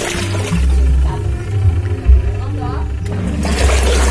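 Polytron PWM7568 twin-tub washing machine's wash tub running with clothes and water, its motor giving a steady low hum as the pulsator churns the load, with a thump about halfway through.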